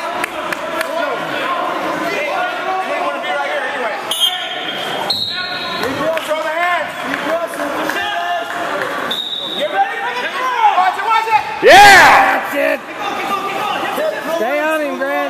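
Spectators' voices shouting and talking in a gymnasium during a wrestling bout, with one loud shout about twelve seconds in. Two short high squeaks sound around four and nine seconds in.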